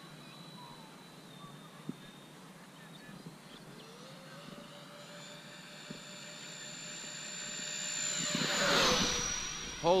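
The twin 70 mm, 12-blade electric ducted fans of an RC A-10 jet whine as it flies past. The sound is faint at first and grows steadily louder over several seconds, then drops in pitch as the jet passes, near the end.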